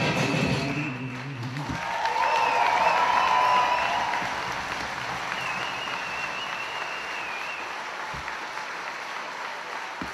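Audience applauding and cheering as the dance music ends in the first couple of seconds; the applause is loudest soon after and tapers off, with a high wavering whistle or cheer above it.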